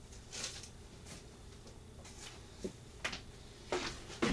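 A handful of faint, scattered knocks and rustles from a person moving about out of view.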